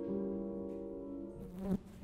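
A cello playing softly, holding a quiet low bowed note. Near the end a short sliding figure breaks off into a brief silence.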